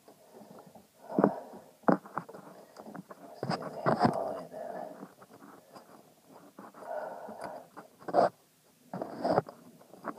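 Close fumbling and handling noise near the microphone while a throttle cable is worked on: about five sharp knocks and clicks spread through, among rubbing and heavy breathing.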